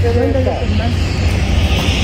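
Wind buffeting the microphone, a steady low rumble, with faint voices of other people in the first part.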